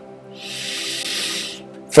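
A man's drawn-out breathy hum, held at one steady pitch, with a hiss of breath that swells and fades in the middle.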